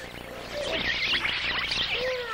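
A crowd of cartoon mice squeaking and chittering: many short, high squeaks overlapping, which swell in about half a second in.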